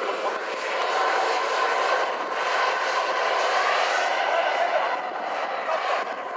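Engines of a radio-controlled MiG-29 model jet running at take-off power, a steady rushing whine as it rolls down the runway, growing a little fainter near the end as it pulls away.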